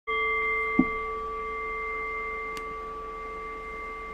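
A struck meditation bell ringing with several clear overtones and slowly fading. A short low knock comes just under a second in.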